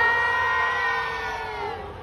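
A long, high-pitched scream from a fan in the audience, held on one note and slowly sinking in pitch as it fades out near the end.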